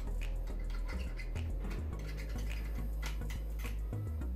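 Short, irregular scraping and scratching strokes of a metal hand tool on a small cast gold bar, cleaning off carbon deposits after melting, over a steady low hum.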